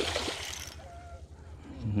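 A hooked striped bass thrashing at the water's surface beside the boat, a burst of splashing that dies away within the first second.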